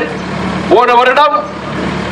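A man speaking into a hand-held microphone: one short phrase of about half a second near the middle, with pauses on either side. A steady low hum runs under it throughout.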